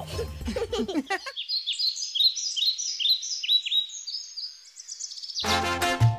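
Birdsong: a string of quick, high, repeated chirps, about three a second, starting about a second in. Lively Latin music with brass and percussion cuts in near the end.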